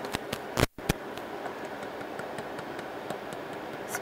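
Handling noise from a 12-volt tire inflator being turned over in the hands: a few sharp clicks and knocks in the first second, the loudest just before a brief dropout, then faint ticks over a steady background hiss.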